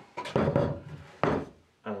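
Wooden boards of hardwood, plywood and softwood being handled and knocked against one another, a few short thuds and scrapes. A voice begins near the end.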